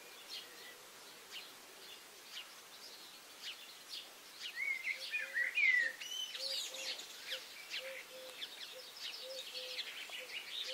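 Birds chirping and twittering in the background, loudest about five to six seconds in. Faint short hums repeat through the second half.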